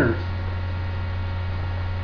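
A steady low electrical mains hum with a faint hiss, running unchanged through the pause.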